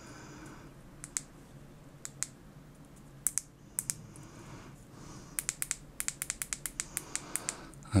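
Small, sharp clicks: a few scattered ones, then a quick run of them, about five or six a second, in the second half.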